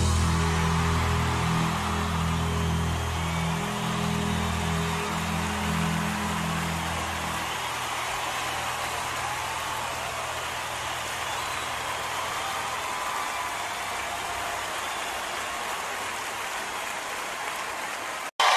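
Large arena audience applauding over the band's final held chord. The chord dies away about seven seconds in, and the applause carries on steadily after it.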